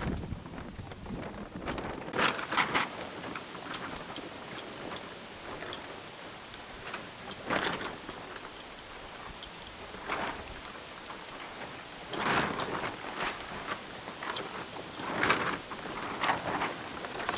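Water splashing in short bursts every few seconds as a windsurf sail and board are handled in shallow lake water, over a steady low wash.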